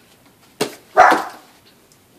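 A dog barking twice: a short bark about half a second in, then a louder one about a second in.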